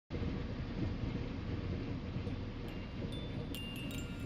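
Electronic intro sting: a steady low rumbling wash like distant thunder, with short bright chime-like pings coming in about halfway through and growing more frequent toward the end.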